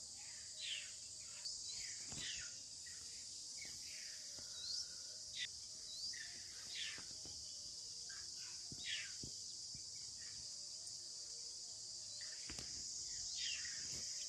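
Outdoor ambience of scrub forest: a steady high insect drone, with short, falling bird chirps every second or so and a few faint clicks.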